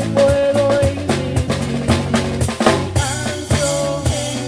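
Live Cuban son band playing an instrumental passage: drum kit with rimshots and bass drum keeping the rhythm under a bass line, guitar, and a held melody note near the start and again near the end.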